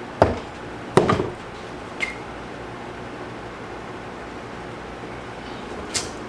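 Aluminum lure-mold halves and a triple plastic injector knocking and clinking as they are handled and seated: four sharp knocks, the second the loudest with a short metallic ring. A steady low hum runs underneath.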